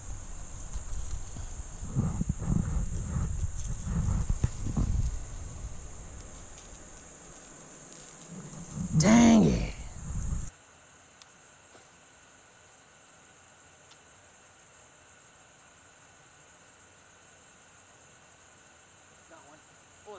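Rumbling handling noise on the camera microphone as the rod and reel are worked, then a man's loud drawn-out groan about nine seconds in; after that only a quiet outdoor bed with a steady high insect drone.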